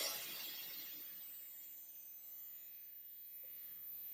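The ringing tail of a crash at the end of the intro music fades out over about the first second, leaving a faint steady electrical hum.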